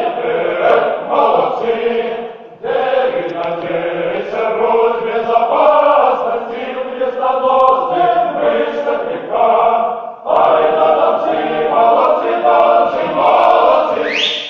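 Male choir singing a Russian song a cappella in full harmony, in long phrases with two short pauses for breath, about two and a half and ten seconds in.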